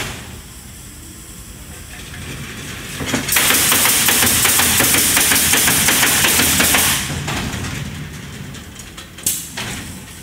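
Pneumatic nailers on an automated fence bridge nailer firing nails into wooden fence boards, a fast run of shots over compressed-air hiss lasting about three and a half seconds. A short burst of air hiss follows near the end.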